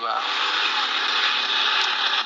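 A steady rushing hiss of noise that starts abruptly and lasts about two seconds, with no pitch to it.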